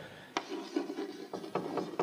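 Chalk writing on a blackboard: a sharp tap as the chalk meets the board about a third of a second in, then a run of short, irregular scratching strokes.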